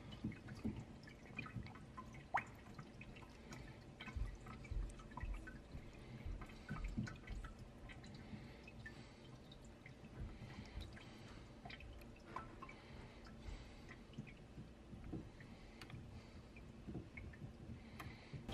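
Faint water movement and dripping in a saltwater aquarium as hands set pieces of live rock on the sand, with scattered light clicks and a few dull low knocks of rock.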